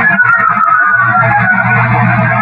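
Filtered, amplified recording of loud, rough hiss over a steady low hum, with a whistle-like tone gliding downward in the first second. The recordist takes it for a signal aimed at them.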